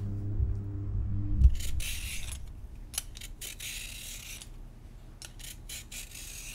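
A low, steady drone stops about a second and a half in. After it come several short scraping, rustling noises with a few light clicks between them.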